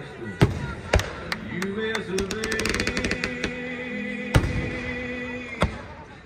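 Aerial firework shells bursting: sharp bangs about every half second to a second, a quick run of crackling in the middle, and the loudest bang near the end. Music and voices continue underneath.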